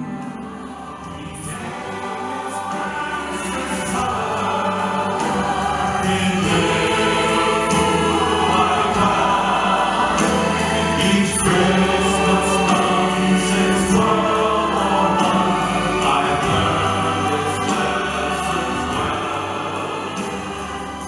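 Live ensemble of female and male singers singing together into microphones over sustained instrumental accompaniment, swelling in loudness over the first few seconds and then holding full.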